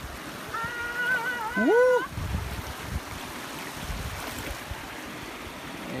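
Shallow stream water running steadily over stones around a wader's feet, with low wind noise on the microphone.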